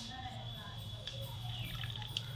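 Plastic syringe sucking the last petrol out of a small plastic cap, a faint slurp of liquid and air.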